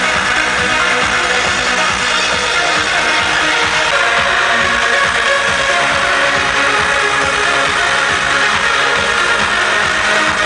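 Loud electronic dance music from a club sound system, heard from the dance floor through a camcorder microphone, dense and steady throughout.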